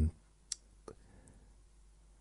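Two short clicks in a pause between words, the first sharp one about half a second in and a fainter one just before a second in, over quiet room tone.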